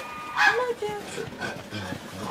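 Young brown bear cub whimpering in short, high, wavering cries, loudest about half a second in, with a spoken word over it.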